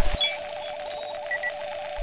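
Synthesized sci-fi scanner sound effect: a steady electronic tone with a fast pulsing flutter, dotted with short high computer beeps and blips, including two quick beeps about a second and a half in.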